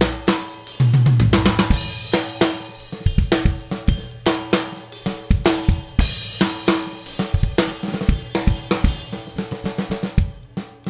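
Drum kit being played in a groove on a Sabian AAX 22-inch Muse ride cymbal, with drum strokes throughout. Cymbal crashes ring out about two seconds in and again about six seconds in.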